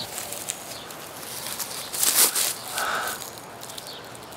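Footsteps and rustling in dry leaves and grass as a person moves and crouches, loudest about two seconds in, with a faint short tone a moment later.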